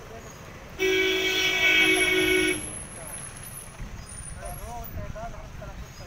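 A vehicle horn sounds once, a steady held honk of about two seconds starting about a second in, over low street background noise.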